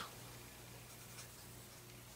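Faint scratching of a pen writing on paper on a clipboard, over a low steady hum.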